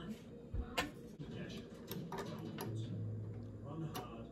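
Light clicks and knocks from hands handling a Kenmore sewing machine while she works out how to thread it, with a brief low hum near the end and a television talking in the background.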